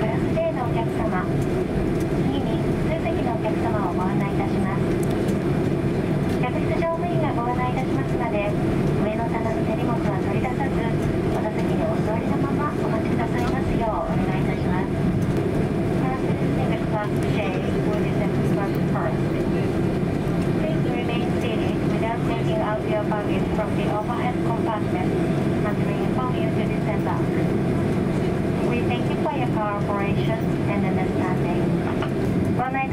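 Cabin PA announcement on the order of disembarkation, in Japanese and then from about a quarter of the way in in English, over the steady cabin hum of a Boeing 767-300 taxiing after landing.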